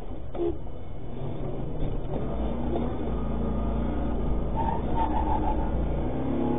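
Steady low engine and road rumble inside the cab of an armored car driving along a highway, with a brief higher tone about five seconds in.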